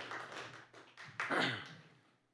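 A quick run of sharp taps, about four a second, then a short voice sound about one and a half seconds in. Everything fades out near the end.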